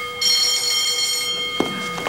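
Electric school bell ringing, signalling the end of class: a steady metallic ring that breaks off for a moment at the start, then rings on and dies away near the end, with a single knock about one and a half seconds in.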